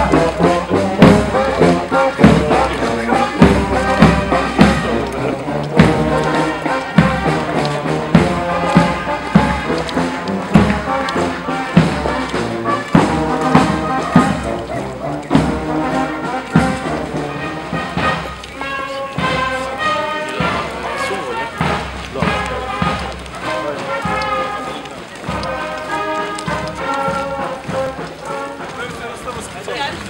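Brass band playing a march, with a steady drum beat under the melody, growing quieter over the second half.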